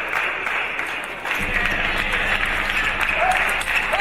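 Steady clapping and crowd noise from spectators, with a few short shouted voices near the end. Faint sharp knocks of a table tennis ball on bats and table sound through it.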